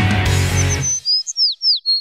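Background music ends about a second in. A bird's short whistled chirps follow, a quick run of notes with several sliding down in pitch.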